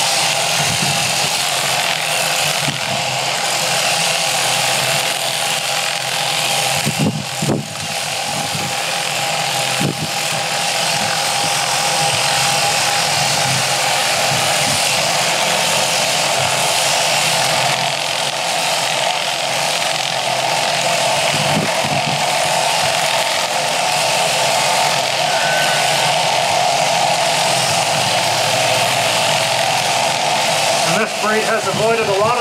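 Electric sheep shears with a one-third-horsepower motor, running steadily as the handpiece cuts through a sheep's fleece. It is a continuous motor hum with a steady whine, dipping briefly about seven seconds in.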